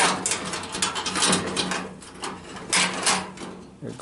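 Thin wire and chicken wire rattling and scraping against a galvanized sheet-metal duct as they are handled: quick runs of small metallic clicks and scrapes, thinning out toward the end.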